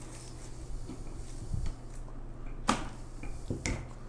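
Faint rustling and handling of flower stems and foliage being worked into a wreath, with two sharp clicks about a second apart near the end, over a steady low hum.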